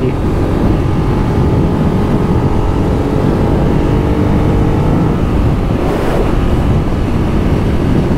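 Ducati Monster 821's L-twin engine running at steady road speed, mixed with wind rushing over the microphone. The engine's pitch holds steady, then shifts briefly about five to six seconds in.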